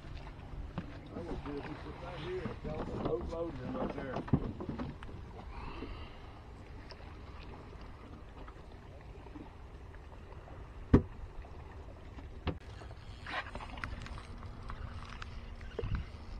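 Water and wind noise around a small boat sitting on calm water, with low, indistinct voices in the first few seconds and again later. A single sharp knock about two-thirds of the way through is the loudest sound.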